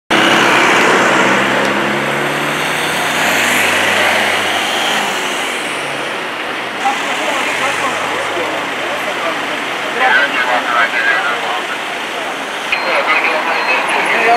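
Street traffic noise with vehicle engines running close by and people talking in the background; a low, steady engine hum is clearest in the first few seconds.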